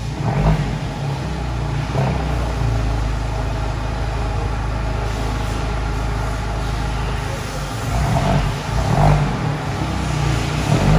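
Modern Fiat 124 Spider's turbocharged four-cylinder engine running at low revs through its exhaust as the car moves off slowly. It gives short blips of throttle about half a second and two seconds in, and revs unevenly again near the end.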